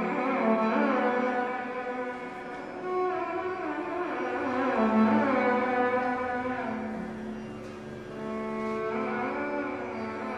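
Carnatic violin playing a melodic passage in raga Mohanam, with sliding ornamented phrases over a steady drone and no percussion.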